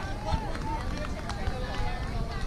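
Distant young players' voices calling and chattering across a softball field, over a steady low rumble on the microphone.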